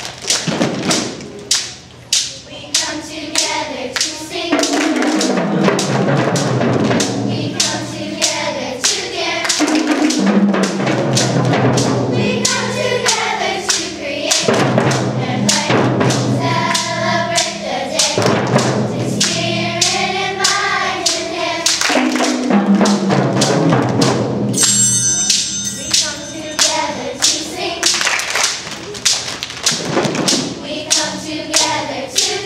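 Children's choir singing in unison over a steady beat of hand drums and claps, about two strokes a second. A brief high ringing note sounds about five seconds before the end.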